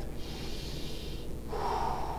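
A man taking a deep breath: a long breathy inhale, then an audible exhale that starts about a second and a half in.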